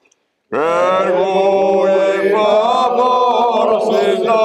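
Men's unaccompanied Corsican polyphonic singing, a few voices in close harmony. After a brief silence, the voices enter together about half a second in with an upward swoop, then hold long chords decorated with sliding, ornamented notes.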